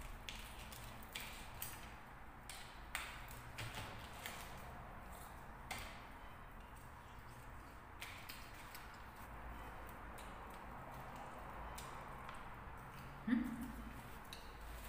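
Quiet eating sounds: fried chicken being chewed and pulled apart by hand over a plate, with scattered small clicks and crackles. A brief vocal sound just before the end.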